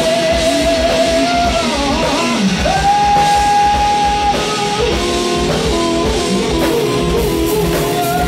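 Live rock band playing, with guitar and drums under a lead line of long held notes: one slides down about two seconds in, and a higher note is held for about a second and a half soon after.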